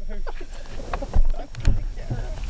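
Handling noise and rustling inside a car, with a few dull thumps, the two strongest in the second half.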